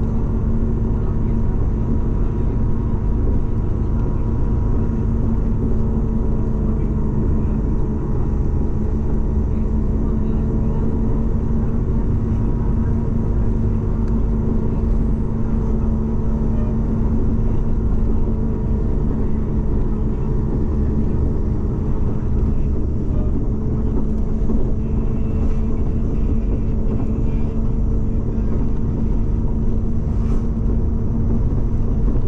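A vehicle driving at a steady speed: a constant engine drone over low road rumble, unchanging throughout.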